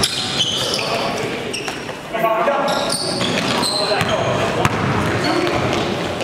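Live basketball game in a gym: sneakers squeaking in many short, high chirps on the court floor, the ball bouncing, and players calling out, with a louder shout about two seconds in.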